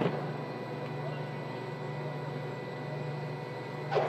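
Factory hall ambience: a steady low machinery hum with faint voices, and one sharp knock near the end.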